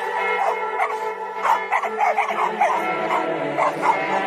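Intro music with steady held tones, with a dog barking and yipping over it from about a second and a half in.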